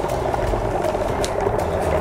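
Dry ice bubbling steadily in a pot of warm water as it turns from solid to gas.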